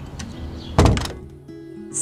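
A door shutting with one heavy thunk a little under a second in, followed by music with steady held notes.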